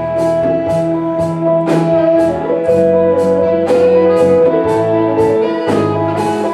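Live blues-funk band playing an instrumental passage between vocal lines: electric guitar and bass notes over a drum kit, with a steady cymbal beat of about two and a half strokes a second.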